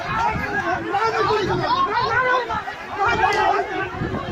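Several people talking at once close by, a babble of overlapping voices.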